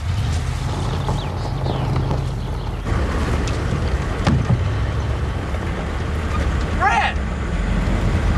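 A military vehicle's engine droning steadily with road rumble, with a few knocks. About seven seconds in, a brief high voice rises and falls.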